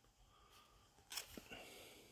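Near silence, with a faint click and light rustle of a trading card being handled a little over a second in.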